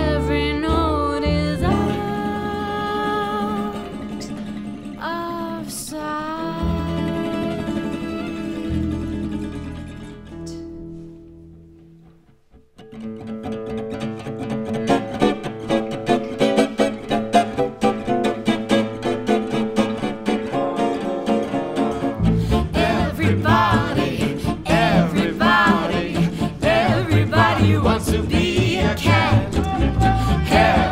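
Gypsy jazz band playing: a woman sings over acoustic guitars, violin and double bass. The music thins out and drops to a near-silent break about twelve seconds in, the guitars come back in with a plucked rhythm, and the full band with double bass returns near the twenty-two-second mark.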